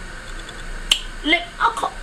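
A single sharp click about a second in, followed by a man's brief low voice.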